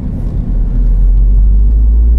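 Low rumble inside the cabin of a moving 2016 MINI John Cooper Works with its turbocharged four-cylinder and REMUS exhaust, engine and road drone together, growing louder about half a second in.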